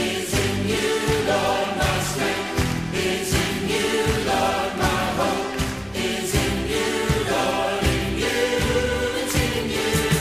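Choir singing a gospel worship chorus with instrumental backing.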